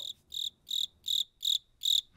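Cricket chirping sound effect: about six short, evenly spaced chirps with the music dropped out, the stock comic 'crickets' of an awkward silence.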